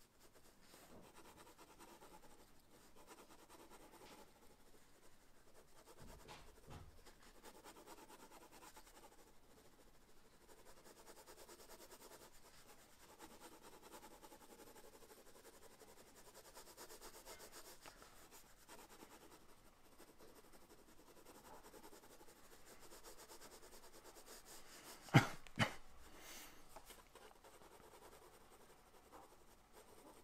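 Pencil shading on sketchbook paper: a faint, continuous soft scratching as the lead is rubbed back and forth to build up a shadow. Two sharp taps about half a second apart near the end are the loudest sounds.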